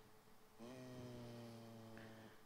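Near silence, broken by a faint, low, drawn-out hum of a man's voice, a steady 'hmm' starting about half a second in and lasting over a second.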